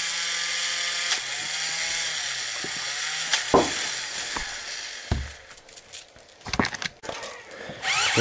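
Small electric motor of a Combat Creatures toy battle robot whirring steadily. The whir stops about five seconds in, leaving a few sharp clicks and knocks.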